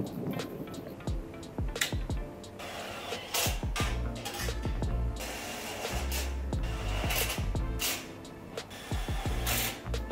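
Background music, with frequent short clicks and knocks over it.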